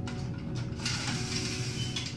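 Surveying tripod's leg clamps being released and its telescoping legs sliding, a scraping, rattling mechanical sound that starts about a second in.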